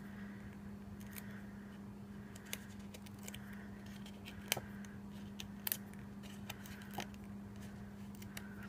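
Black foam adhesive dimensionals being peeled from their backing sheet and pressed onto cardstock by hand: scattered faint small clicks and ticks, over a steady low hum.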